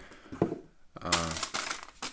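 Sealed plastic bags of LEGO pieces being picked up and handled: one sharp click of plastic parts about half a second in, with light crinkling of the bag film.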